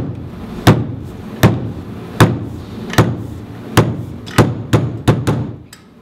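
A fist knocking on a desk to tap out a beat: sharp thumps at a steady pace of a little more than one a second, coming quicker near the end.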